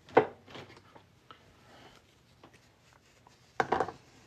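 A quenched coin being dried by hand in a cloth towel: a sharp knock about a quarter of a second in, faint rubbing and small clicks, then a quick cluster of knocks near the end.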